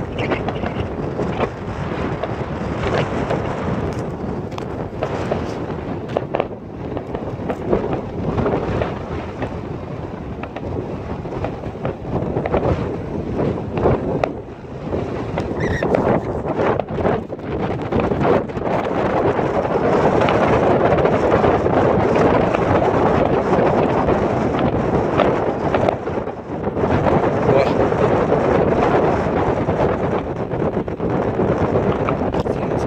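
Wind buffeting the microphone, louder in the second half, with scattered sharp bangs from distant fireworks bursting over the water.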